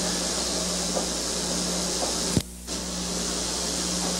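Steady hiss and electrical hum of an old recording's sound track in a pause between words. A sharp click a little past halfway is followed by a brief dropout of the sound.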